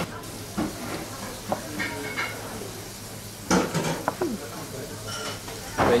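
Restaurant background: a steady low hiss with faint clinks of dishes and tableware, and a brief murmur of voice about three and a half seconds in.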